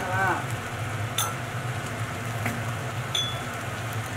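Tomato and egg stir-fry, just thickened with starch slurry, simmering quietly in a wok over a steady low hum, with a few light clicks about one and two and a half seconds in.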